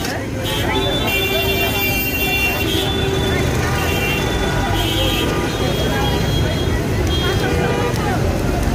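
Busy street ambience: a crowd of voices talking over traffic, with vehicle horns tooting now and then.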